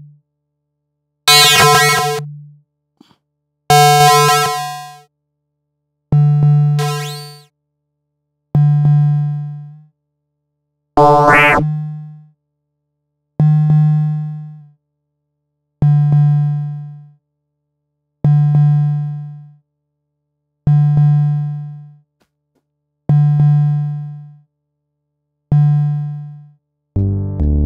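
Reaktor Blocks modular synth patch playing a sequenced low note about every two and a half seconds, each note dying away over about a second. The early notes carry bright upper overtones, one near the middle has a rising sweep, and the later notes sound duller.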